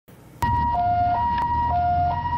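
Ambulance's two-tone hi-lo siren, switching between a higher and a lower note about every half second. It starts abruptly about half a second in, over a low rumble.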